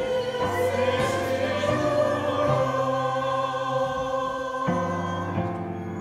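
A small mixed choir of women's and men's voices singing a slow introit in long, held chords that change every couple of seconds.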